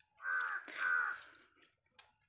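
A crow cawing twice in quick succession, two loud harsh calls of about half a second each.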